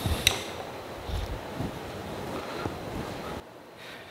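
Hand tools and small metal parts handled on a workbench. A sharp click comes just after the start, then a few faint knocks over a steady room hum, which drops off abruptly a little before the end.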